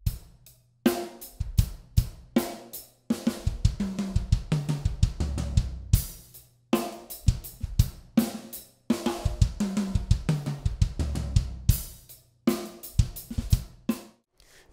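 Drum kit played in double strokes shared between hands and foot: two hits with the sticks on the toms and snare, then two kicks on the bass drum, repeated as quick fills. It comes in phrases of a few seconds with brief pauses between them, and cymbal crashes ring among the strokes.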